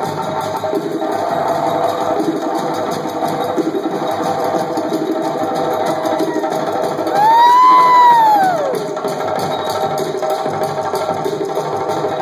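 Live West African-style hand drumming on a djembe and a strapped barrel drum, a dense fast rhythm that runs on without a break. About seven seconds in, a single loud high call rises and then falls over a second and a half above the drums.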